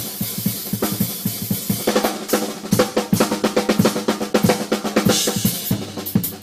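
Drum kit played hard in rapid fills and grooves, featuring a 14-inch Sonor Pure Canadian snare drum with a 13-ply maple shell, along with bass drum and cymbals.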